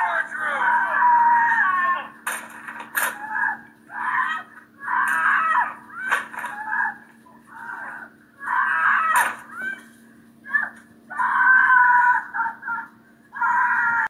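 Film soundtrack heard through laptop speakers: a woman screaming in repeated cries and people shouting as she is held back in a struggle, with a few sharp knocks and a steady hum underneath.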